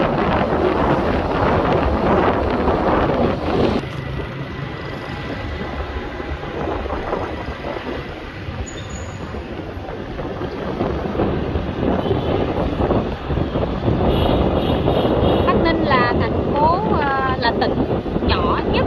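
Wind buffeting the microphone over steady road and traffic noise from travelling along a city street; it eases off about four seconds in and builds again in the second half.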